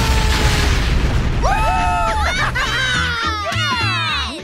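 Cartoon soundtrack: a boom fading into a low rumble under a long held scream. Near the end comes a burst of laughing voices over music.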